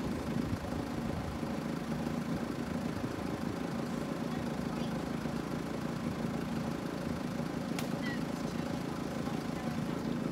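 Steady low hum of a vehicle engine idling, with one faint click about eight seconds in.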